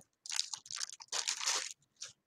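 Plastic bubble wrap crinkling and crackling as it is pulled off and handled, in three short bursts within the first two seconds.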